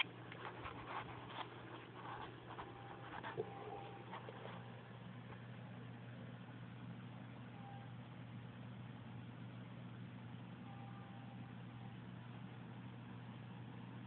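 Quiet room tone with a steady low hum. A few faint clicks and rustles come in the first four seconds, then it settles to an even hush.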